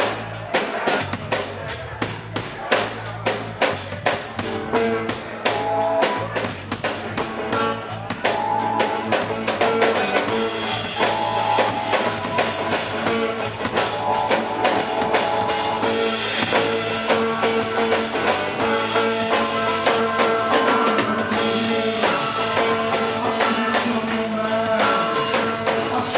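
Live rock band playing an instrumental passage: a drum kit keeping a steady beat under electric guitar and held organ notes.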